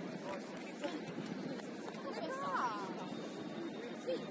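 Indistinct voices of players and people at the pitch-side talking and calling over one another, with one higher, bending call about two and a half seconds in.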